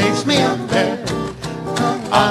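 Small acoustic jazz band playing live: strummed acoustic guitar over a plucked string bass, with a melody line on top.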